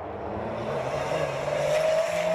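Cross-country rally car engine approaching under acceleration, its note rising slowly and growing louder.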